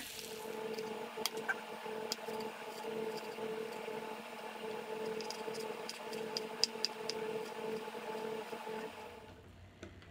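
Knife slicing ginger root on a plastic cutting board: scattered sharp clicks as the blade meets the board, over a steady hum.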